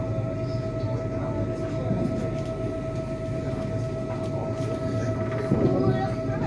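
Inside a moving electric passenger train, likely the ETR 700 Frecciarossa: a steady rumble of the wheels on the track with a constant high whine.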